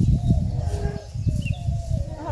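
Outdoor rural background: an uneven low rumble with faint bird chirps.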